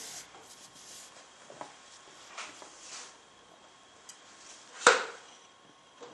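Pencil scratching in short strokes on paper and a ruler sliding and being shifted on a desk, with a few small clicks. One sharp knock, the loudest sound, comes about five seconds in.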